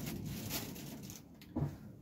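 Faint handling noise as clumps of model foliage are pressed onto glued scenery: light rustles and small clicks, with one short louder knock about one and a half seconds in.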